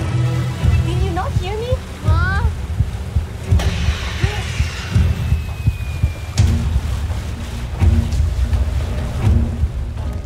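Film score for a tense scene, with deep throbbing low pulses like a heartbeat. There are short rising pitched calls about a second in, and a thin high tone that slides slowly down for a couple of seconds near the middle.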